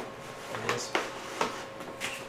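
The wing of a foam Freewing MiG-21 RC jet being worked loose and pulled off the fuselage: a few light clicks and knocks from the plastic fittings and foam parts as they come apart.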